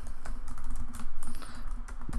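Typing on a computer keyboard: a quick, uneven run of keystrokes over a steady low hum.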